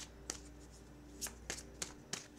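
Tarot cards being shuffled and handled by hand: four sharp card snaps, one early and three in quick succession in the second half.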